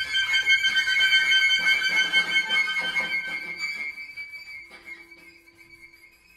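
Contemporary chamber music for flute, clarinet, violin, cello and accordion, played live. A loud entry of several high held tones, with the flute among them, gradually dies away; one high note lingers and a lower held note comes in near the end.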